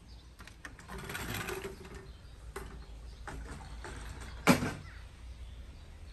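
Outdoor patio ambience with a low steady rumble, a brief rustle about a second in, and a single sharp knock about four and a half seconds in.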